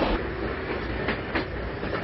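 Steady rumble of a passenger train carriage in motion, with a couple of faint clacks about a second in.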